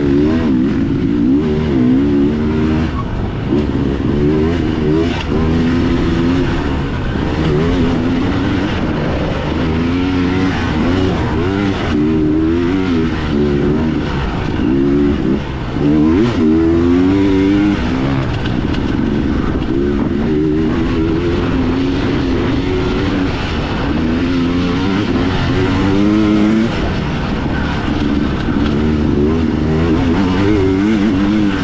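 Two-stroke dirt bike engine ridden hard on a dirt track, heard from on the bike, its revs rising and falling again and again with throttle and gear changes, with a brief dip about fifteen seconds in.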